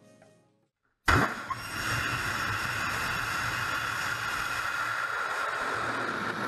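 Rocket engine ignition and liftoff: a sudden loud start about a second in, then a steady rushing roar of rocket exhaust.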